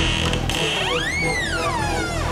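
Eerie horror-film score: a pitched, siren-like tone swoops up and then slides slowly back down over a steady low drone.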